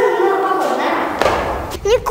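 A drawn-out voice-like tone with a stepping pitch, then a thud and a short rush of noise about a second in.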